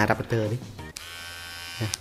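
Electric hair clipper switched on about a second in, buzzing steadily for about a second, then switched off.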